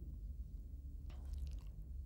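A pause in a man's speech: a steady low hum from the recording, with a faint mouth or breath noise, such as a lip smack or an intake of breath, about a second in.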